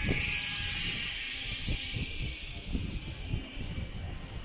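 Outdoor ambience on a walk: a steady high hiss, with soft low thuds about twice a second in the second half, fading somewhat near the end.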